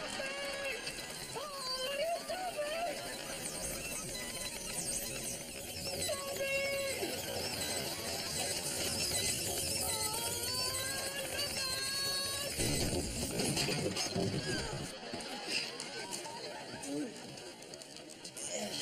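A man's wordless cries and yelps as a motorised spinning prayer mat turns him round, with a noisy patch about two-thirds of the way in.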